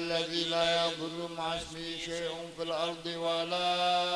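Male voice chanting an Arabic dhikr prayer in long, held melodic notes, the pitch steady with small wavering ornaments about one and a half and three seconds in, moving to a new held note at about three and a half seconds.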